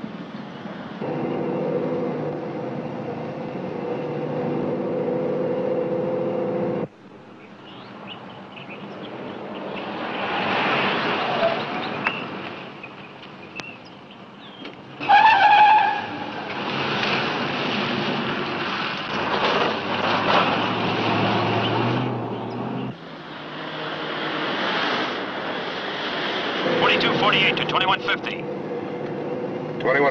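Car engine running on the road, with a short, very loud tyre screech about halfway through as the sedan swings hard into a U-turn.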